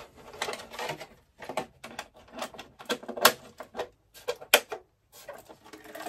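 Irregular run of sharp clicks and light clatter as the push-button automotive hood pins holding an RC rock crawler's plastic body are pressed and released, with the body being handled and lifted off the chassis; the loudest click comes about three seconds in.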